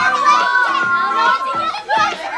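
A group of excited children shrieking and shouting over one another, with long high-pitched squeals in the first half.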